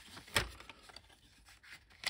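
Handling noise from the computer parts being moved by hand: one sharp knock less than half a second in, then faint rubbing.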